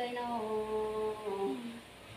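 A woman's voice singing or humming one long held note in a drawn-out melodic style. The pitch shifts once near the end, and the note then fades out.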